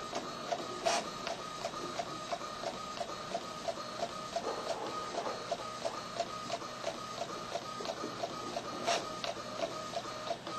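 Small portable inkjet printer printing a page: a steady mechanical rhythm of about three strokes a second as the print head shuttles and the paper feeds. Two sharper clicks stand out, about a second in and near the end.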